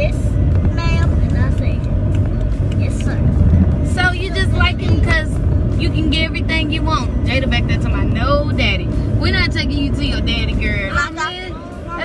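Low, steady rumble of a car being driven, heard from inside its cabin, with a voice over it that wavers in pitch as in singing. The rumble drops off about a second before the end.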